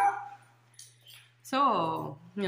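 Speech: after a short, quiet pause, a voice says a drawn-out "so..." that falls in pitch, over a faint steady low hum.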